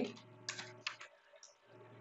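A few faint computer keyboard keystrokes, isolated clicks about half a second and about a second in.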